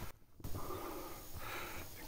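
A man's breathing close to the microphone between phrases, faint and breathy, after a brief moment of near silence just after the start.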